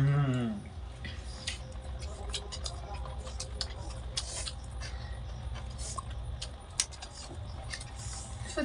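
People chewing egg rolls, with the paper wrappers crinkling: scattered small clicks and crackles over a steady low hum. A short voice sound falls in pitch at the very start.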